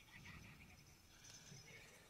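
Near silence, with only faint indistinct background sound.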